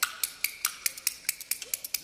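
Kuaiban bamboo clappers played in a quick, even rhythm of about five clacks a second: the lead-in pattern before a clapper-talk verse.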